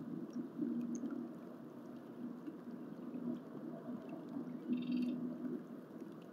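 Outdoor ambience with a low hum that breaks off and returns every second or so, and one short, high bird call about five seconds in.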